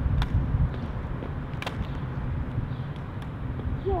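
A metal crutch tapping on asphalt a couple of times as a boy hobbles along, over a steady low rumble.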